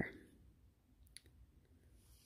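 Hands handling a skein of red embroidery floss, mostly near silence with one faint, sharp click a little past a second in.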